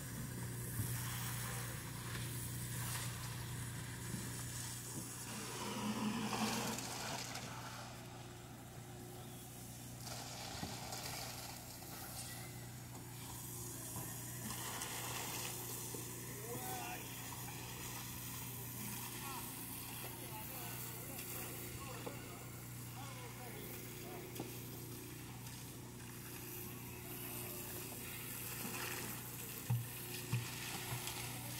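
Background voices of a work crew over a steady low engine hum and a diffuse hiss of activity, with a louder swell about six seconds in.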